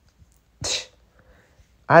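A single short, sharp breath noise from a man, a quick hiss about half a second in.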